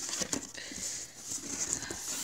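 Hands handling and scratching at a taped cardboard shipping box, with light rubbing and a few soft taps as she struggles to get it open one-handed.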